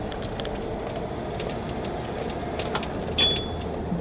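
Steady road and engine noise heard inside a moving car's cabin, with a brief high chirp about three seconds in.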